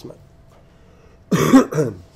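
A man coughs twice in quick succession about a second and a half in, the cough of someone with a cold.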